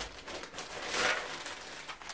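Polythene bag crinkling and rustling as a glass bathroom scale is slid out of it, loudest about a second in.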